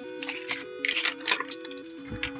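Background music with a simple stepping melody, over short rustles and taps of a paper marker pad being handled and set down on a desk.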